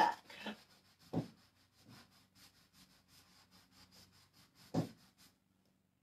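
Cloth applicator pad wiping spray wax across a painted wooden dresser drawer: faint, quick rubbing strokes, with two louder brief sounds about a second in and near the end.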